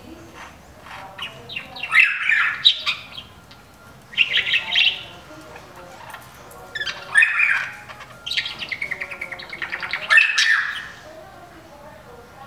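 Bewick's wrens calling in four bursts of rapid repeated notes, the last burst the longest at about two seconds.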